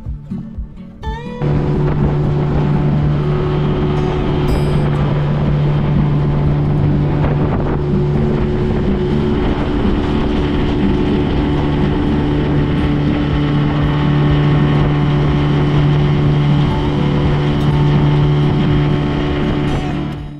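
Small boat's outboard motor throttled up about a second in, its pitch rising, then running loud and steady at speed.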